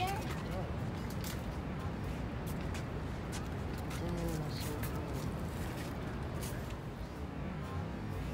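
Outdoor background with a steady low rumble, scattered faint clicks, and a faint voice about four seconds in.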